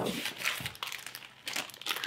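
Packaging crinkling and rustling in irregular bursts as a hand rummages in a cardboard box and draws out a plastic-wrapped ramen packet. It starts suddenly.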